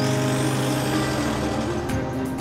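A car driving past: a rush of engine and tyre noise swells in suddenly, with a faint rising whine. Background music continues underneath.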